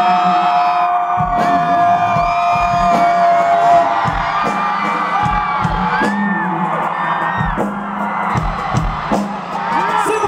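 Live band music with a thumping drum beat, over a crowd cheering and whooping close to the microphone. A long high held note runs through the first four seconds or so.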